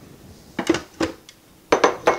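A ceramic bowl clinking and knocking against the blender jar and the counter. It makes a few short, sharp clinks: a cluster about halfway, a single one a little after, and another cluster near the end as the bowl is set down.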